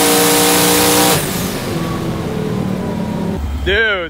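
Boosted drag car's engine at full throttle with a steady pitch, heard from inside the car, cutting off suddenly about a second in as the driver lifts, then dropping to a quieter coast. A person's voice comes in near the end.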